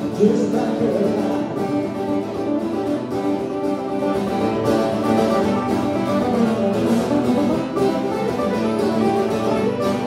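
Acoustic guitar strummed steadily in an instrumental passage of a live country-folk song.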